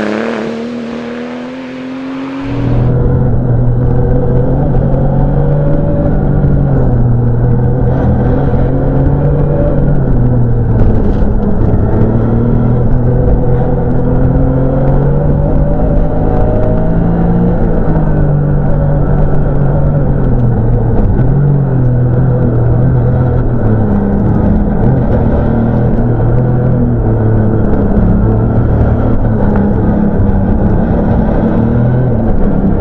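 Porsche 911 rally car's flat-six engine: heard from outside for the first couple of seconds as the car pulls away and fades, then from inside the cockpit. There it runs steadily and sounds muffled, its pitch rising and falling as the car accelerates and changes gear along a winding road.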